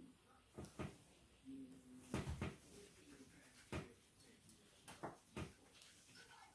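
Quiet handling sounds at a painting table: a handful of light taps and knocks as a paintbrush and painting things are set down and moved, the loudest cluster about two seconds in.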